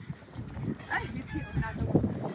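A bull breathing and moving close to the microphone as it follows a plastic feed bucket, with scuffing on dry dirt and a sharp knock near the end as the bucket is set down.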